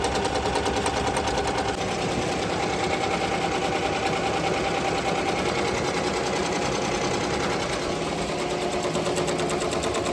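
Ricoma multi-needle embroidery machine stitching a felt patch: a steady, fast rattle of needle strokes, shifting slightly in tone about two seconds in.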